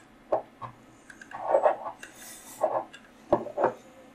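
Scattered light clicks and knocks of metal tools being handled at a fly-tying vise, about six of them spread over a few seconds, with a short rubbing clatter about a second and a half in.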